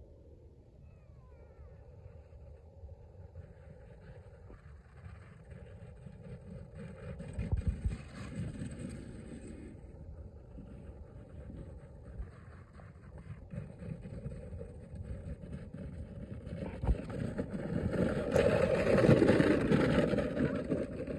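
Plastic sled sliding over snow, a scraping hiss that builds and is loudest in the last few seconds, with a brief low thump about eight seconds in.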